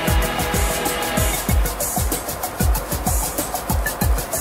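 Background music with a steady electronic beat, a deep kick about twice a second under light ticking cymbals.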